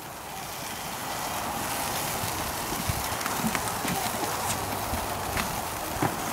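Chicken and ribs sizzling on a gas grill, a steady hiss that grows louder over the first couple of seconds, with scattered light clicks of metal tongs against the grate.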